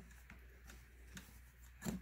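Faint rubbing of hands on cotton fabric as a seam is finger-pressed, over a low steady hum, with a brief louder noise just before the end.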